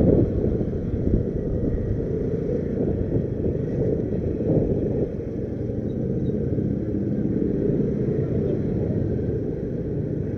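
A motorbike's steady low rumble, engine and road noise, as heard from a camera mounted on the bike while it rides slowly along a street. The rumble eases slightly about halfway through.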